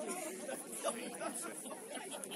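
Indistinct chatter of several voices, faint and unclear, from people on and beside a rugby pitch.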